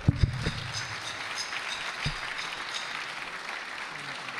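Audience applause, an even wash of many hands clapping. A few low thumps come near the start and one about two seconds in.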